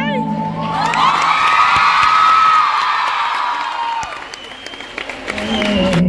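Concert audience cheering and screaming in many high-pitched voices. The noise swells about a second in and dies down after about four seconds, and the music starts again near the end.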